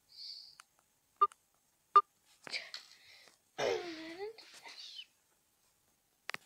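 Two sharp clicks of plastic Lego pieces being handled, about a second apart, with a brief hiss before them. They are followed by a short wordless voice sound that dips and then rises in pitch.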